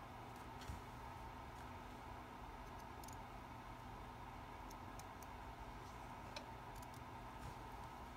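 Scissors cutting through crocheted lace: a few faint, scattered clicks and snips of the blades over a steady low room hum.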